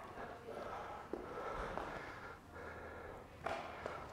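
Faint sounds of a man doing alternating lunges: breathing and the soft steps of his trainers on a rubber gym floor.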